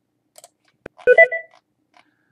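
A mouse click, then a short chime of several tones, about half a second long, from QuickBooks Desktop confirming that the journal entry has been saved.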